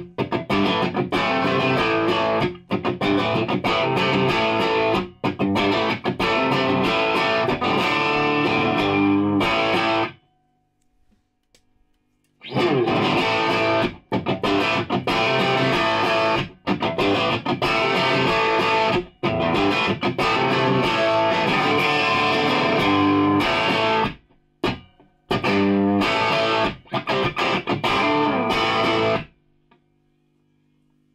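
Fender Jazzmaster electric guitar played with distortion through a RAT Hotrod and a Marshall Class 5 valve combo, in full chorded riffs. The playing stops for about two seconds about ten seconds in, then resumes with a short break later, and ends just before the close.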